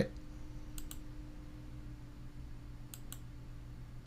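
Computer mouse button clicked twice, each a quick double tick of press and release, about two seconds apart, over a faint steady hum.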